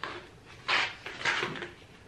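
Sheets of paper rustling and sliding as they are pulled through and out of a folder, in three short bursts. The two later bursts are the loudest.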